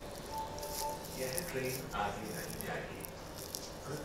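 Quiet station-platform ambience: faint voices in the distance, with a short steady beep lasting about half a second, under a second in.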